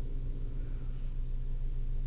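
Steady low hum inside the cabin of a parked 2013 Ford Focus, with no music coming through yet.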